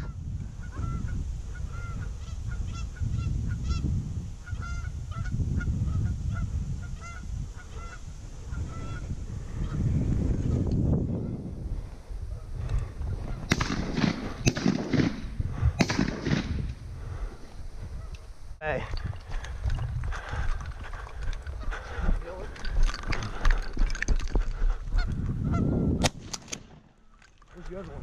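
Canada goose honks, short calls repeated about twice a second for the first nine seconds or so, followed by scattered sharp knocks and rustling.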